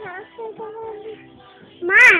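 A young girl singing a few held notes, then a short, loud, high cry near the end.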